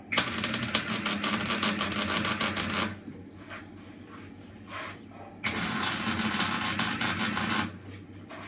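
Wire-feed (MIG) welder laying two short welds on steel: a steady frying crackle of the arc for about three seconds, a pause, then a second run of about two seconds.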